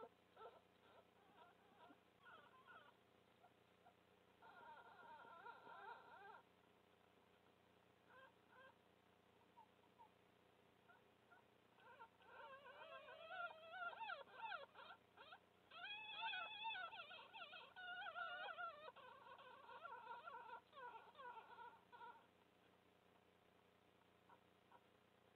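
Faint, wavering high-pitched calls of young red fox cubs, in short scattered bouts at first, then a longer, busier stretch from about halfway that stops a couple of seconds before the end.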